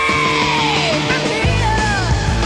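Loud rock music: a long held high note slides down in pitch about half a second to a second in, and another falling line comes near the end, over full band backing.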